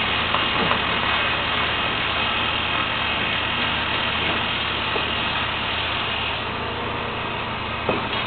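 Engine of heavy construction machinery running steadily: a constant low drone under an even hiss.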